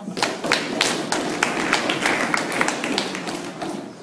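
A small group clapping: many quick, irregular hand claps that tail off near the end.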